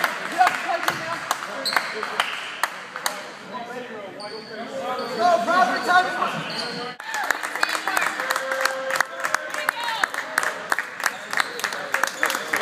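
Basketball play in a large gym: a ball bouncing on the court amid background voices and many sharp knocks and clicks. The sound changes abruptly about seven seconds in.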